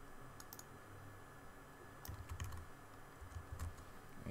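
Faint, scattered computer keyboard keystrokes, a handful of separate key presses with a few soft low knocks among them, as commands are pasted into a terminal.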